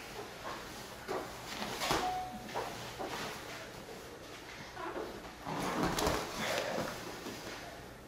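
Grapplers' bodies and bare feet scuffling, sliding and bumping on a vinyl-covered wrestling mat in irregular bursts, louder about two seconds in and again between five and seven seconds, with a brief squeak just after two seconds.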